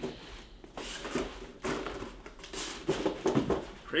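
A cardboard shoebox being handled and its lid lifted off: scattered light knocks and rustles of cardboard.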